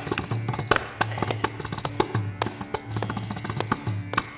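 Mridangam playing a fast, dense run of sharp strokes over deep, booming bass strokes, in Carnatic concert accompaniment.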